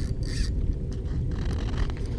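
Uneven low rumble of wind buffeting the camera microphone over open water, steady throughout.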